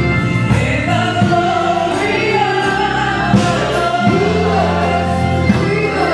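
Gospel praise and worship team, several voices singing together into microphones over sustained bass notes from the band.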